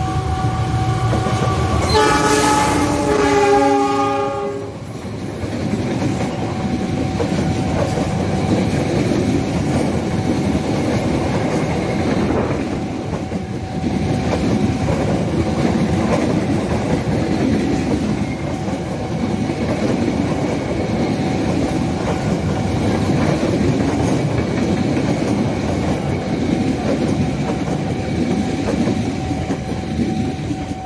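GE CC206 diesel-electric locomotive sounding its horn about two seconds in, a chord lasting a couple of seconds that drops in pitch as the engine passes. Then its passenger coaches rumble and clatter along the rails for the rest of the time.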